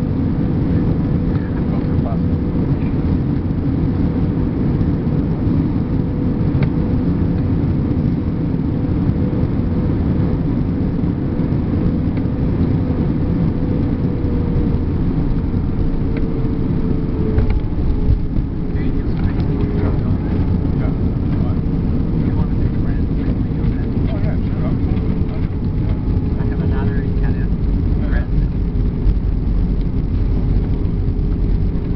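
Airbus A321-200 cabin noise over the wing during final approach and landing: a loud, steady rumble of engines and airflow, with an engine tone that drops in pitch about halfway through as thrust comes back. Near the end the low rumble swells as the jet rolls down the runway with its spoilers up.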